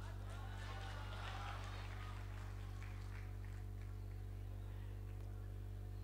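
Steady low electrical hum from a sound system, with faint voices during the first couple of seconds.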